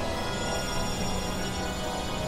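Experimental synthesizer drone music: a dense wash of many sustained tones held steady, over a heavy low rumble.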